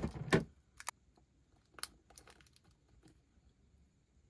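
Small plastic miniature pieces being handled by fingers: a louder knock at the very start, then sharp light clicks about a second in and near two seconds, with fainter ticks between.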